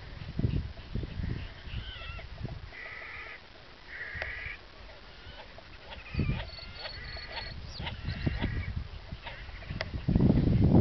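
Wild birds calling over the water: many short calls, busiest from about six seconds in. Irregular low rumble of wind on the microphone runs under them.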